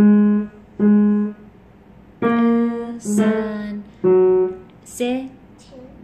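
Piano played slowly, one note at a time: six separate notes about a second apart, each held briefly and fading.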